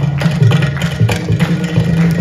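Carnatic percussion ensemble of ghatam (clay pot) and mridangam playing fast, dense strokes.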